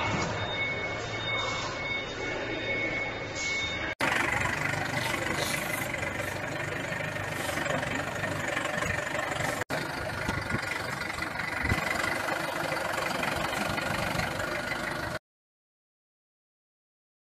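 A forklift engine running as it carries a heavy load across a yard; the sound cuts off abruptly near the end. For the first few seconds, before that, a disinfection chamber's misting system gives a steady hiss with two high, steady whining tones.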